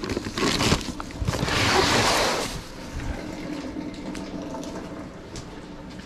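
Rustling of a plastic bag and handling of packed decor items, with a dense hissy rustle lasting about a second, starting just over a second in, then quieter handling noise.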